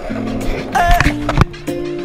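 An R&B song with a sung vocal over a beat. A few sharp clacks of a skateboard hitting the pavement break in about a second in and again shortly after.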